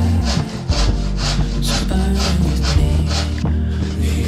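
Handsaw cutting through a white shelf board in quick back-and-forth strokes, about ten of them at two to three a second.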